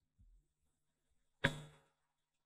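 Near silence in a pause between speech at a conference microphone, broken by one brief, soft sound about one and a half seconds in.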